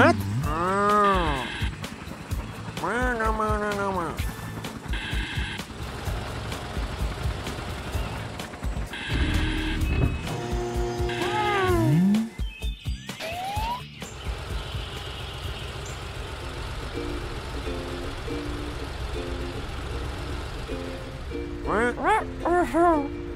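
Children's cartoon soundtrack: short voiced cartoon sound effects and electronic beeps through the first half, a brief rising glide a little after halfway, then background music with a steady beat.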